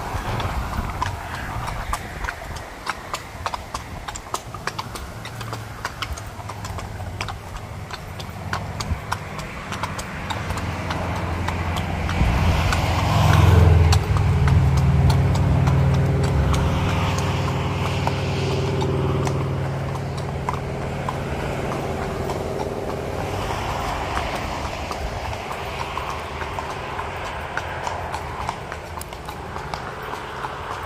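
Hooves of several walking horses clip-clopping on pavement. A low, steady engine hum builds under them, is loudest about halfway through and fades out a few seconds later.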